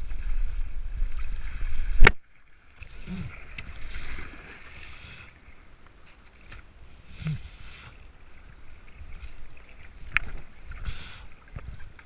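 Rushing water around a plastic kayak hull for about two seconds, cut off by a sharp knock as the boat runs into the grassy riverbank. Then quieter scraping and rustling of the hull and paddle against grass, with a few faint knocks.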